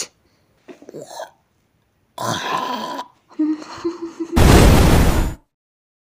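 Cartoon sound effects: a few short noises, a held low sound, then a loud, deep burst lasting about a second near the end.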